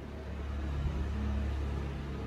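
A steady low rumble with a faint hum over it, like a motor vehicle running nearby. It starts suddenly and fades just after.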